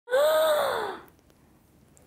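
A woman's drawn-out vocal exclamation of surprise, an 'ooh' that rises slightly and then falls in pitch, lasting about a second and followed by quiet.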